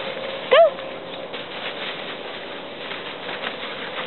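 Poodle puppy scampering over grass and into a fabric play tunnel: soft rustling and light scattered scuffs of paws, with a faint steady hum underneath.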